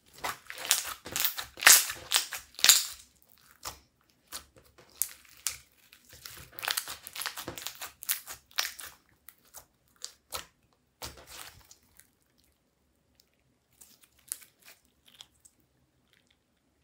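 Hands squishing, folding and stretching clear slime coloured with eyeshadow, giving irregular sticky crackles and pops. The crackling is busiest in the first three seconds and again in the middle, and thins out to scattered clicks toward the end.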